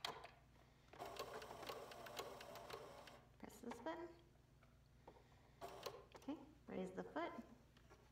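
Pfaff computerised sewing machine running a short burst of straight stitching through felt, starting about a second in and stopping after about two seconds, a fast, even run of needle clicks.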